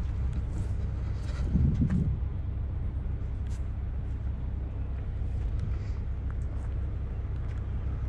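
An engine running steadily, a low hum with a brief swell about a second and a half in.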